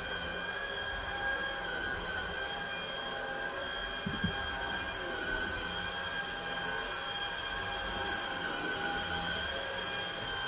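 Upright vacuum cleaner running on carpet: a steady motor whine with several high tones that waver slightly in pitch. A couple of soft knocks about four seconds in.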